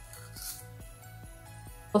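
Soft background Christmas music with a steady beat.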